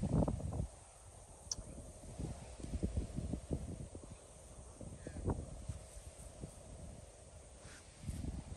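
Wind buffeting the microphone outdoors, giving irregular low rumbles and thumps, strongest right at the start and again about three and five seconds in.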